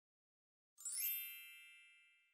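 A bright chime sound effect that starts suddenly about three-quarters of a second in with a shimmering sparkle, then settles into one ringing ding that fades slowly.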